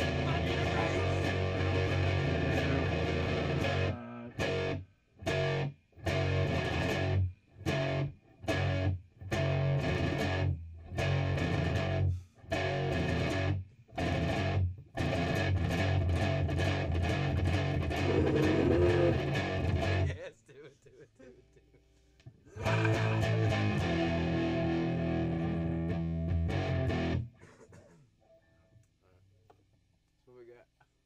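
Live band jam with guitar and bass. The chords keep cutting off suddenly and coming back in short stop-start hits, then play on steadily, drop out for a couple of seconds, resume, and stop a few seconds before the end.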